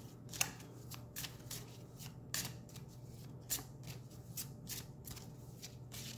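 A deck of oracle cards being shuffled by hand: a run of irregular soft snaps and flicks of the cards, over a low steady hum.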